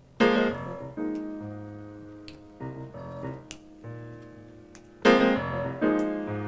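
Solo piano opening a slow jazz number. A loud chord is struck just after the start and another about a second later. Held notes ring and fade between further chords, and a second strong chord comes about five seconds in.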